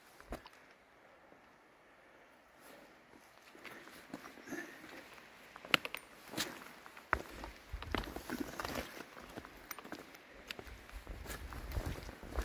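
A hiker's footsteps on a dirt-and-rock forest trail: irregular steps and scuffs that start after a quiet first couple of seconds.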